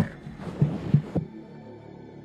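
Three low, dull thumps over a faint hiss in the first second or so, the last two close together like a heartbeat. They give way to a faint, steady musical drone.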